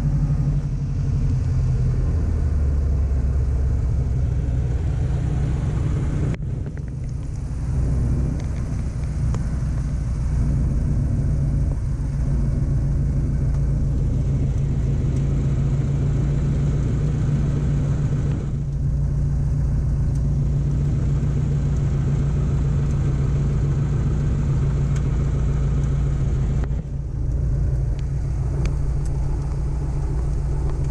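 Light aircraft's piston engine and propeller running at low taxi power, heard from inside the cockpit as a steady low drone. The level dips briefly about six seconds in and again near the end.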